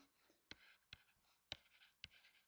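Faint stylus writing on a tablet: three short ticks about half a second apart, with soft scratching between them as numbers are written.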